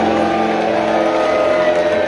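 Live rock band holding sustained chord tones on electric guitars and keyboard, the notes ringing steadily rather than a beat being played.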